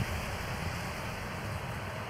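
Steady low rumble of wind buffeting a bicycle-mounted camera's microphone while riding.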